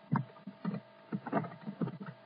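Computer keyboard keystrokes: about half a dozen short, irregular taps as a word is typed.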